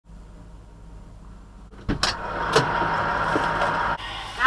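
Semi-truck cab with a low steady idle hum. About two seconds in come a few sharp clicks and knocks of the cab door being opened as someone climbs in, and then a louder steady noise with a faint high tone that cuts off at the end.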